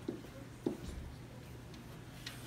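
A pen writing on an interactive whiteboard's surface, with a couple of short taps in the first second as the numbers are written.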